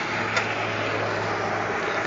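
Steady hum and rumble of a vehicle heard from inside its cabin, with one brief faint click about half a second in.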